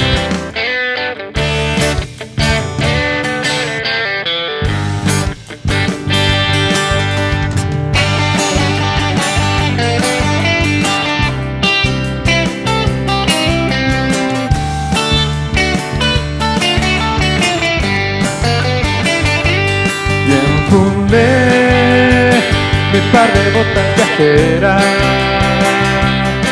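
Acoustic and electric guitars playing an instrumental country break: a few sharp, separated strums in the first five seconds, then steady acoustic strumming with an electric guitar lead over it.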